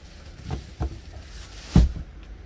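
Third-row seatback of a Toyota Veloz being folded down, with its plastic protective cover rustling. There are a couple of light clicks, then a heavy thump near the end as the seatback lands flat on the cargo floor.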